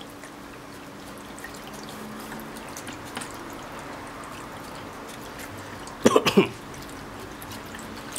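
Wooden stick stirring sodium hydroxide developer solution in a shallow plastic tray: faint liquid swishing and dripping. About six seconds in, a brief loud vocal noise, like a throat-clear, stands out above it.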